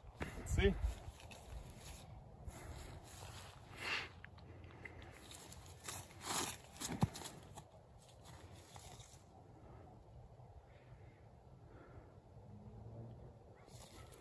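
Faint open-air ambience during a disc golf throw. There is a short vocal sound about half a second in, then a few brief rustles and knocks from steps on grass and the throw a few seconds in.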